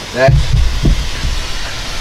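Low rumble and dull thumps of a camera being handled and swung round, loudest just after the start, after a single spoken word.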